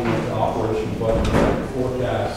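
A man talking, with a brief thud about halfway through.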